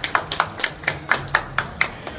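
A small group of people clapping their hands: sharp, fairly even claps at about four a second.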